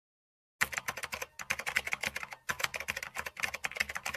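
Fast computer-keyboard typing, a quick irregular run of clicks starting about half a second in: a typing sound effect for text being written out on screen.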